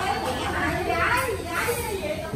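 Lively, high-pitched voices speaking over each other, with a brief rustle of a nylon jacket being pulled on about a second in.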